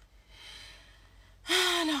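A woman drawing an audible breath in, about a second long, then starting to speak loudly near the end.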